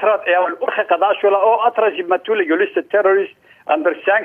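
Speech only: a man talking over a telephone line, with a brief pause near the end.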